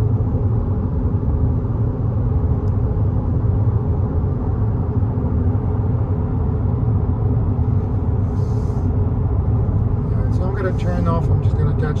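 Steady low road and tyre rumble inside the cabin of a 2022 Infiniti QX50 cruising at freeway speed, with its turbocharged four-cylinder engine heard faintly under a little wind noise. A man's voice starts talking near the end.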